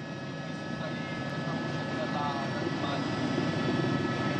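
Steady drone of a helicopter's engine and rotor, growing slightly louder, with a faint voice briefly in the background.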